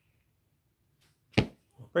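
A single sharp smack or slap-like sound about a second and a half in, after near quiet.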